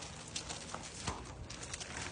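Golden retriever puppy's paws scrambling over loose pea gravel: an irregular run of small crunches and clicks.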